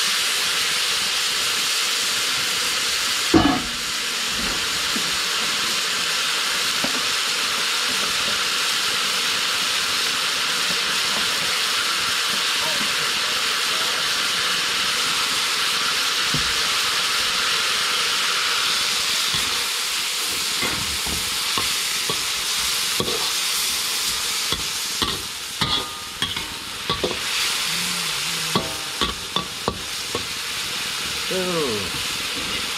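Meat pieces frying in oil in a large wok, a steady sizzle. A metal ladle knocks once against the wok about three seconds in, and scrapes and clinks against it as it stirs near the end.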